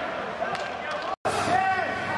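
Players' shouts and calls echoing in a large indoor sports hall during a football match, with ball knocks on the artificial pitch. The sound drops out for an instant just over a second in, after which a raised voice holds a long call.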